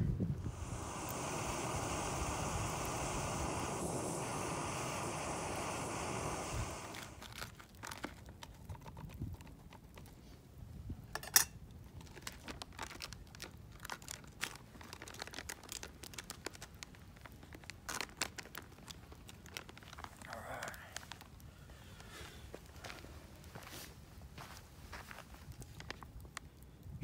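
A steady rushing noise for about the first seven seconds, then the foil freeze-dried meal pouch crinkling and rustling as it is handled, with scattered small clicks and one sharp snap about eleven seconds in.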